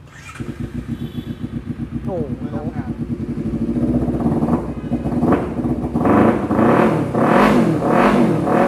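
Honda CBR250RR's parallel-twin engine starting just after the beginning and idling with a fast, even pulse. In the second half it is revved in a series of quick throttle blips, each rising and falling.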